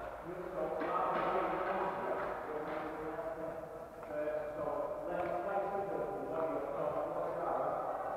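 Indistinct voices of several people talking across a large, echoing sports hall, with no words clear enough to make out.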